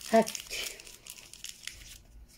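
A short spoken word, then a brief crinkling rustle that fades out within about a second.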